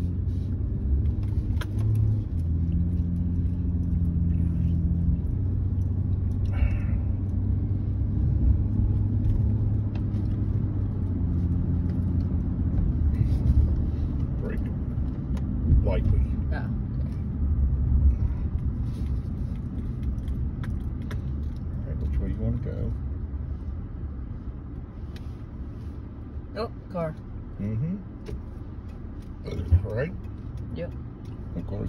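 Engine and road noise heard inside the cab of a truck driving slowly: a low, steady hum that eases off in the second half as the truck slows.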